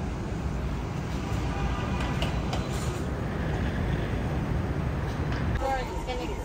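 Steady low rumble of road traffic, with a shuttle van coming up the lane toward the listener.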